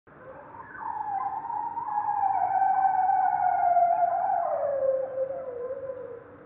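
Male bearded seal singing underwater: one long call that glides slowly down in pitch over about five seconds. It is the courtship song of a sexually mature male, made to attract females.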